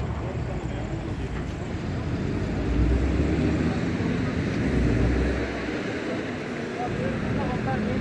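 Road traffic noise: a low rumble of passing vehicles that swells and fades.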